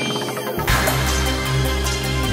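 Outro background music: a chiming jingle that gives way, just over half a second in, to an electronic track with a heavy, steady bass.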